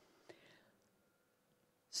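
Near silence: room tone in a pause between sentences, with one faint short mouth or breath noise about a third of a second in.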